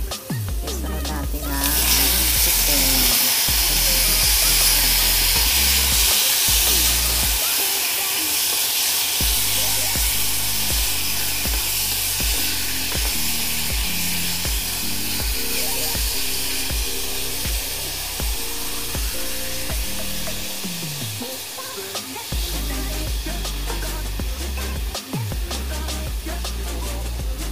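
Raw chicken pieces sizzling loudly in a hot pan of sautéing onions, the sizzle starting suddenly about a second and a half in and easing a little later on, with a wooden spoon stirring. Background music with a steady bass beat plays throughout.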